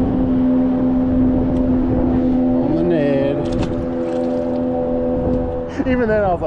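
A boat motor running at a steady pitch, a constant drone with a few even overtones that eases off near the end.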